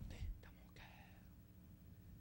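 A man's voice trailing off at the end of a word, then a faint breathy, half-whispered sound about half a second in, then quiet room tone with a low steady hum.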